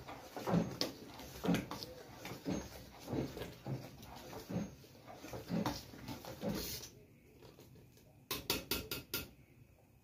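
A long-handled spoon stirring boiling rice-flour and milk atole in a stainless steel stockpot, scraping the pot about once a second to keep it from sticking and burning. A quick run of sharp taps comes near the end.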